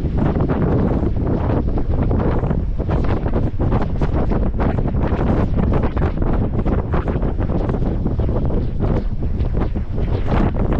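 Heavy wind buffeting on the microphone of a camera mounted outside a vehicle moving along a dirt trail. It is a loud, constantly fluttering rumble that masks any engine or tyre sound.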